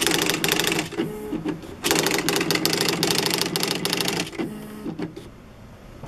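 Smith Corona SD 300 electronic typewriter printing: two runs of rapid character strikes, about a second and then about two and a half seconds long, each followed by a short motor whir of the carriage. It goes quieter in the last second.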